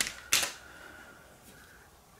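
Plastic eyeglass frames clicking as they are handled and set down: two sharp clicks about a third of a second apart, the second louder, followed by faint room noise with a faint steady high tone.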